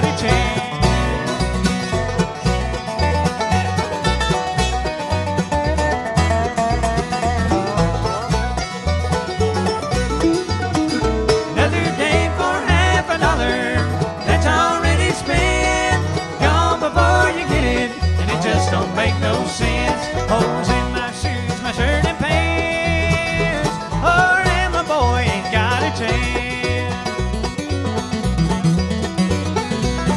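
Bluegrass band playing an instrumental break: banjo, mandolin and acoustic guitar picking fast runs over a steady bass beat, with no singing.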